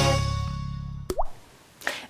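A TV show's intro jingle fades out. About a second in there is a single 'plop' sound effect with a quick upward pitch, like a drop falling into liquid.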